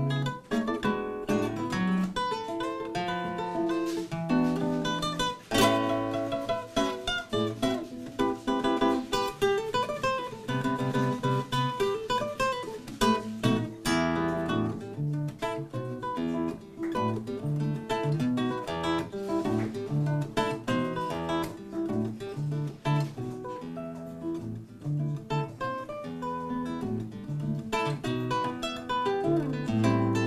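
Nylon-string classical guitar played fingerstyle: a continuous run of plucked melody notes and bass notes, with a few sharp strummed chords.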